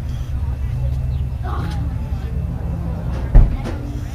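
A steady low rumble with faint voices in the background, and one sharp loud thump about three and a half seconds in.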